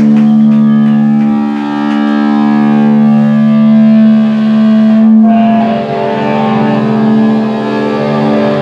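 Distorted electric guitars and bass letting one chord ring out with no drums. The chord changes about five and a half seconds in.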